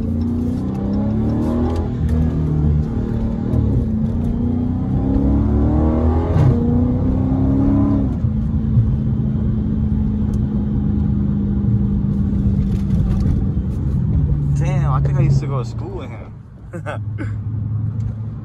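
Dodge Charger SRT 392's 6.4-litre HEMI V8 heard inside the cabin, its drone rising in steps through the gears for the first eight seconds or so as the car accelerates, then holding a steady note at cruising speed. The level dips briefly near the end.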